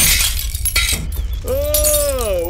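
Glass shattering from a gunshot, its crash dying away with a few sharp clinks. About one and a half seconds in, a man's loud drawn-out yawn starts, rising and falling in pitch.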